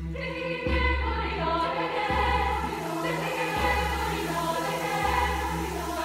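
Mixed choir singing in parts, with a deep low note sounding again about every second and a half beneath the voices.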